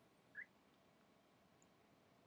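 Near silence: room tone, with one faint short high chirp about half a second in.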